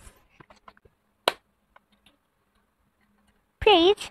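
A few faint ticks and one sharp click about a second in, from a sticker sheet and paper sticker book being handled. A child's voice comes in briefly near the end.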